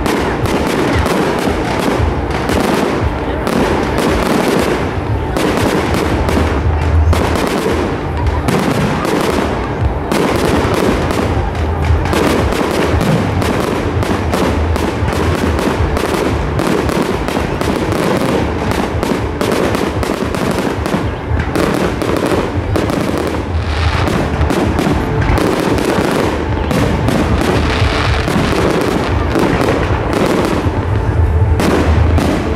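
Fireworks display: a dense, unbroken barrage of aerial shells bursting and crackling, many bangs a second with deep booms underneath.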